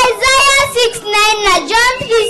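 A young girl singing into a microphone, her high voice holding wavering notes.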